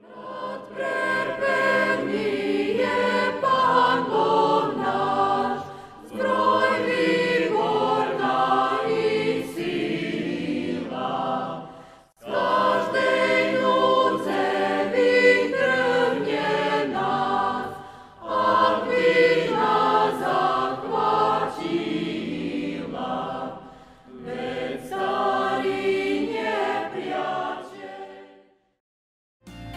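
Choir singing in four phrases of about six seconds each, with a brief break between phrases.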